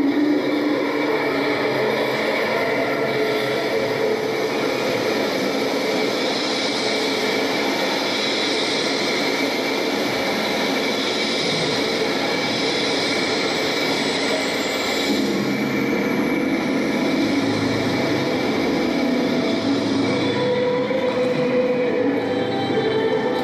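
The routine's soundtrack playing over the hall's speakers: a steady, rumbling, train-like mechanical sound with no clear beat.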